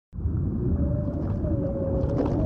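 Underwater ambience sound effect: a deep, steady rumble with a long drawn-out tone over it that wavers slightly, the whole cutting in suddenly at the start.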